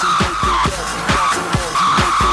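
Techno played loud over a club sound system, picked up by a phone among the crowd: a steady four-on-the-floor kick drum about two beats a second, with a harsh mid-pitched synth sound that recurs about every two seconds.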